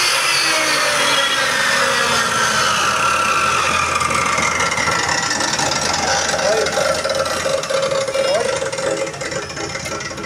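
Wadfow 14-inch metal cut-off machine winding down after a cut: the whine of its motor and disc falls steadily in pitch over several seconds as it coasts toward a stop.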